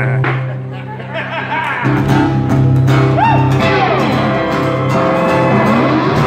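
Live rock band playing with guitars and a steady bass note. The band thins out briefly, then comes back in full about two seconds in, with notes sliding up and down over the top.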